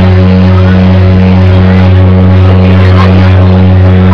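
Live electronic music played very loud, recorded from the crowd: a steady low synthesizer bass drone runs unbroken under layered sustained keyboard tones.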